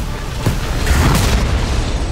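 Film sound-effect explosion: a deep boom right at the start, a second hit about half a second in, then a sustained low rumble of the blast, with the trailer's music underneath.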